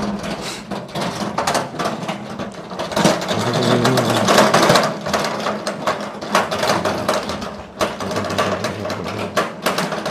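Metal barrow cart with spoked wheels rattling and clattering continuously as it is pushed over rough concrete, a little louder in the middle.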